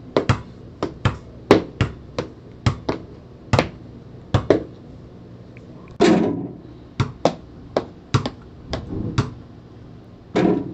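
Basketball bouncing on a gym floor, struck in quick successive dribbles that echo around the hall. About six seconds in, a louder, longer bang as the shot strikes the rim and backboard, then the dribbling resumes.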